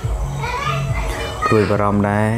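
Young children's voices talking and calling out, with one drawn-out high call near the end.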